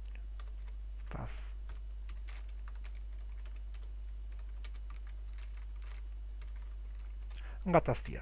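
Computer keyboard typing: irregular, soft key clicks, over a steady low hum.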